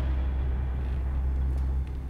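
A deep, steady low rumble that cuts off abruptly near the end.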